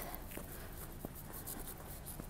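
Faint footsteps on a paved path, a light scuff about every half second or so.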